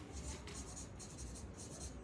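Felt-tip marker writing on flipchart paper: a run of short, faint scratchy strokes as letters are written.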